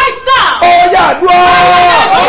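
A man and a woman calling out loudly together in fervent chanted prayer or praise, drawn out into two long held notes.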